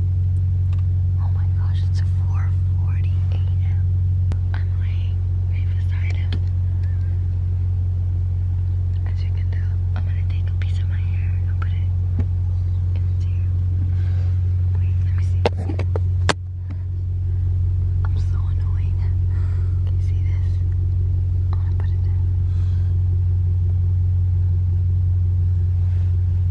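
Steady low hum of a car idling, heard from inside the cabin, with faint whispering over it. A couple of sharp clicks come about fifteen to sixteen seconds in, with a brief dip in the hum.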